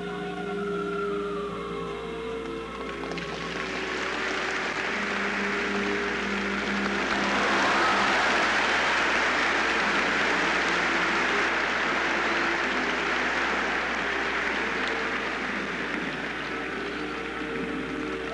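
Audience applause swelling up over background music with long held notes. The clapping begins about three seconds in, is loudest near the middle, and carries on to the end.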